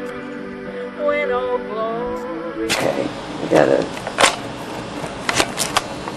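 Singing with musical accompaniment, held notes that bend in pitch. About two and a half seconds in it cuts off abruptly to a room recording with a series of sharp clicks and knocks.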